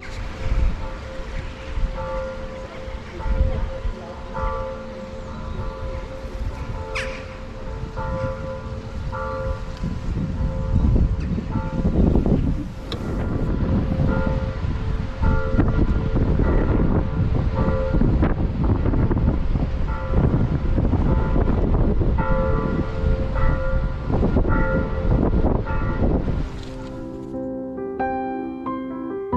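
Church bells ringing in the distance, struck roughly once a second over a steady hum, with gusty wind buffeting the microphone.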